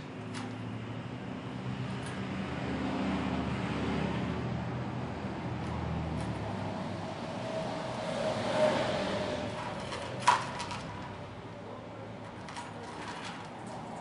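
A low engine hum, like a vehicle passing, that swells and fades twice, with a single sharp click about ten seconds in.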